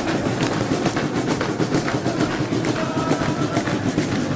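A group singing a Christmas carol to a drum beat and steady hand clapping.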